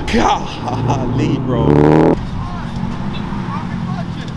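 Cars driving slowly past on the street, their engines running at low speed; a steady low engine hum carries through the second half.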